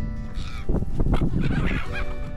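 A flock of silver gulls calling harshly, some flying close overhead.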